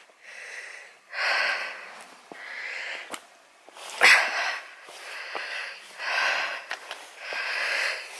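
A woman breathing heavily through the mouth while walking, one audible breath about every second.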